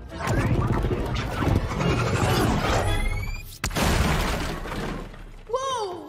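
Cartoon crash sound effects: a long rush of smashing and shattering debris, with a short rising whistle and a sharp crack a little past the middle. A character's voice cries out near the end.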